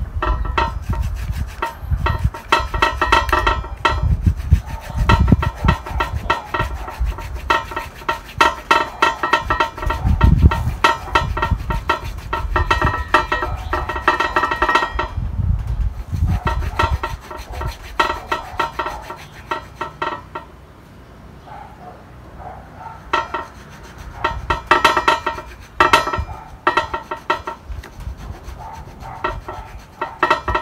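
Rapid, close-up scratchy rubbing and scraping of gloved hands working on the bark and branches of a potted bonsai fig, with a short lull about two-thirds through.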